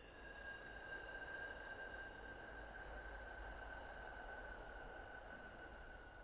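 A struck meditation bell rings on in one long, slowly fading tone with a slight downward drift in pitch.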